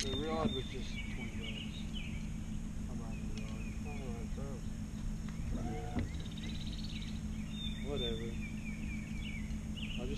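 Small birds chirping in short repeated calls over a steady low hum, with a few brief muffled bits of a man's voice.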